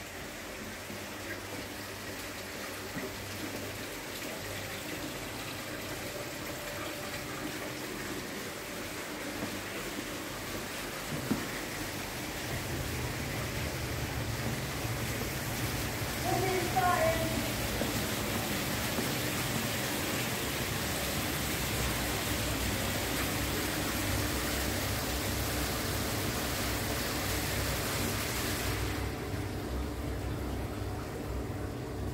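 Steady rush of running water from an indoor water-show display, slowly growing louder, over a low hum that comes in about 12 seconds in. A brief voice is heard about halfway through.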